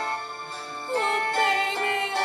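Karaoke backing track of a slow pop ballad with sustained keyboard chords, and a woman's singing voice joining in about a second in.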